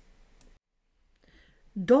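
Near silence in a pause of a spoken reading, with a faint click or two; the reader's voice starts again near the end.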